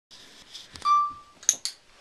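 A short electronic beep about a second in, then two sharp clicks a split second apart from a dog-training clicker being pressed and released.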